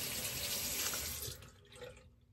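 Water running from a tap into a sink as a steady rush, then shut off, fading out about a second and a half in.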